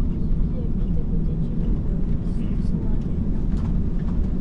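Steady low rumble inside the cabin of an Airbus A330-900neo airliner taxiing slowly after landing, with faint passenger chatter in the background.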